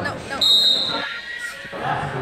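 A short, sharp whistle blast from a referee's whistle, about half a second in, over shouting voices.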